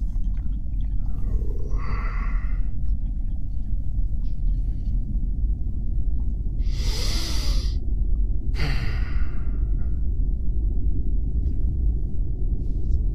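A man breathing heavily: three loud breaths or sighs, about two seconds in, around seven seconds in (the strongest, with a slight groan) and just before nine seconds. They sit over a steady low rumble.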